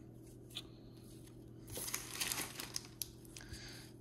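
Foil trading-card pack wrapper crinkling as it is handled, in a rustling spell of about a second and a half near the middle, after a single light click.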